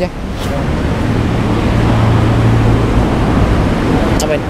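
A vehicle passing close by on the road: engine hum and tyre noise swelling over the first couple of seconds, then holding steady.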